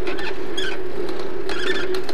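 A bicycle rolling along a street, with a steady hum and a few short, high squeaks from the moving bike.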